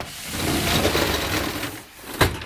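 Gortite roll-up compartment door on a fire pumper being pushed up by hand, its slats rattling as it rolls for about a second and a half.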